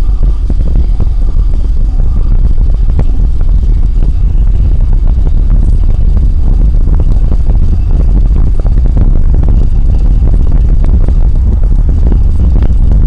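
Road and wind noise of a car driving at highway speed: a loud, steady low rumble with a constant rapid flutter.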